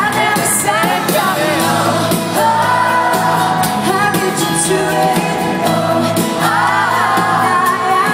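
Live acoustic rock band performance: a lead vocalist singing a melody over strummed acoustic guitars, heard from within an arena crowd.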